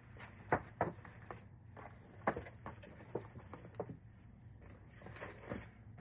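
Paper gift bag and its paper shred rustling and crinkling in irregular sharp crackles as a plush bear is pressed down into the bag.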